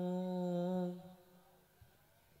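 A male voice holding one long, steady sung note, like humming, in sholawat chant; it fades out about a second in, leaving near silence.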